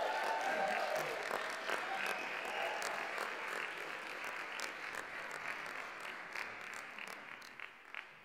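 Audience applauding at the end of a drum and vibraphone piece, with a cheer or two at the start. The clapping fades steadily and thins to a few last claps near the end.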